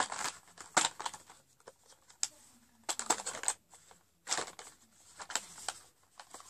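Plastic cosmetics packaging and lip gloss tubes being handled: irregular crinkling and rustling with sharp plastic clicks, in several bursts with short pauses between.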